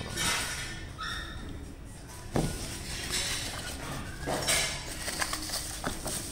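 Handling noises as a small packaged part is unwrapped: rustling plastic wrap in short bursts, with one sharp knock about two and a half seconds in.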